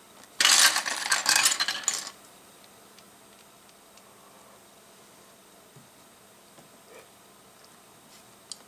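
Loose plastic LEGO pieces clattering together on a tabletop as a hand sifts through them, a dense burst of small clicks lasting about a second and a half, starting about half a second in.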